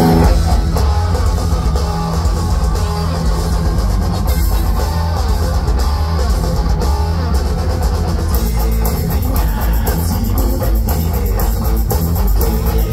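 Live rock band playing an instrumental passage on electric guitars, bass and drum kit through a loud PA, with no vocals. The sound is steady, heavy on the low end.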